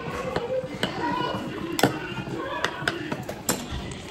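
Metal utensil clinking and tapping against a ceramic bowl while food is stirred, about half a dozen sharp clicks, the loudest near the middle. Faint voices in the background.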